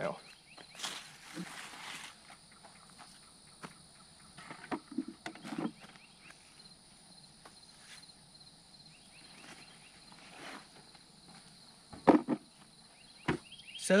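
Rustling and handling of large squash leaves and stems as zucchini are picked by hand, with scattered light clicks and snaps and one short louder sound about twelve seconds in.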